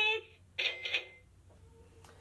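A talking toy cash register speaking in a high-pitched recorded voice: the close of its start-up greeting, which begins 'Open for', then one more short word about half a second in, then quiet for the last second.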